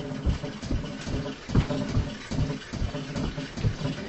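Feet stomping on a floor in a steady rhythm during a train-style dance, a thud about every third of a second.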